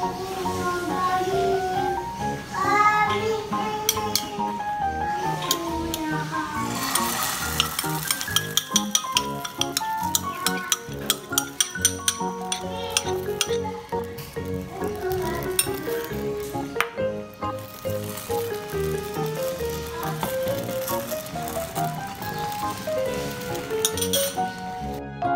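Background music over the sizzle and crackle of egg-and-meat martabak batter frying in a hot, oil-free nonstick frying pan, with the crackling densest from about a third of the way in to about halfway through.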